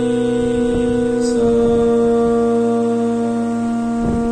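Casio portable electronic keyboard playing held notes in a steady tone that does not fade, moving to new notes about one and a half seconds in.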